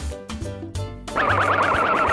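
Upbeat children's background music with a steady beat; a little over a second in, a loud warbling cartoon sound effect with rapidly repeating pitch wobbles plays over it for about a second.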